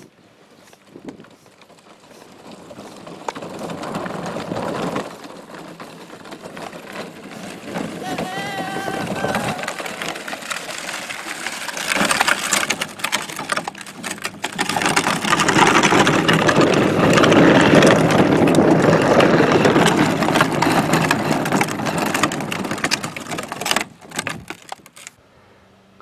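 Plastic wheels of a child's pedal tractor rolling over a gravel path. The rolling noise grows louder as the tractor comes close and stops near the end.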